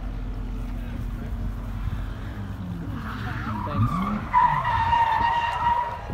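A race car's engine running and revving, then a loud, steady high-pitched tyre squeal starting about four seconds in and lasting about a second and a half: tyres spinning on the track, typical of a drag-strip burnout.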